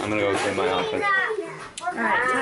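Young children's voices, chattering and calling out as they play.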